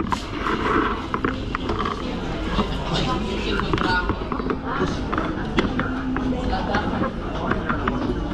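Indistinct chatter of people nearby over a steady background hum, with scattered short clicks and taps.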